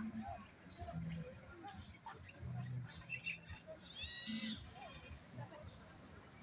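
Indistinct voices of people nearby, with a few short high-pitched chirping calls about two and four seconds in.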